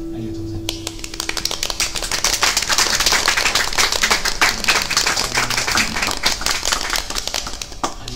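The last acoustic guitar chord of a song rings out and fades, then a small audience claps for several seconds and the clapping stops just before the end.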